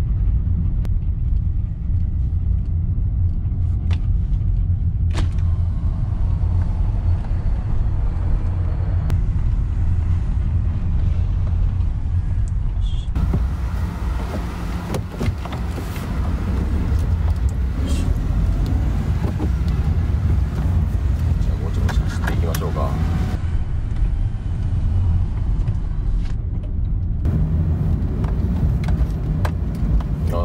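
Steady low rumble of engine and road noise heard inside the cab of a Honda N-VAN (660 cc three-cylinder, six-speed manual) while it is being driven.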